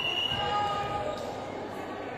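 Echoing sports-hall hubbub during volleyball: voices calling across the courts and a ball thudding on the court floor.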